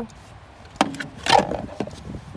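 Plastic fuse box cover being handled and turned over: a sharp click a little under a second in, then a brief scraping rub and a few small clicks.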